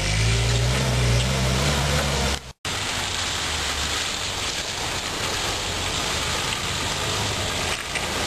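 Land Rover engine revving and rising in pitch as the vehicle pulls away up a muddy track. It breaks off suddenly about two and a half seconds in. After that comes a Land Rover Discovery 3 crawling through deep muddy ruts, its engine lower and quieter under a steady hiss.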